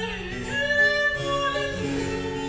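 A woman singing in classical style with harpsichord accompaniment, holding a long note in the middle.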